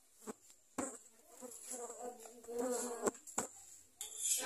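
A fly buzzing close by, its pitch wavering, with a few sharp metallic clicks of a utensil against the roti griddle.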